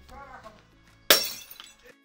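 A single sudden crash about a second in, dying away over half a second, with faint music.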